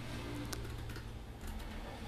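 A few faint computer mouse clicks, one about half a second in and another near the end, over a low steady hum.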